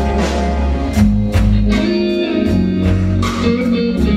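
A live soul band playing an instrumental passage between vocal lines: electric guitar over bass guitar and a drum kit keeping a steady beat.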